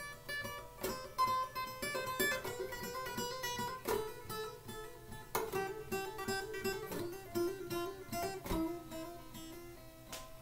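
Acoustic guitar playing a continuous run of notes made by hammer-ons and pull-offs on the left hand, each figure repeated several times as a finger-strength and endurance exercise, with a few firmer picked notes along the way.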